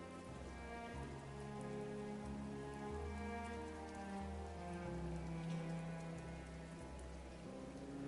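Soft background music of slow, held chords changing every second or two, over a steady hiss of rain.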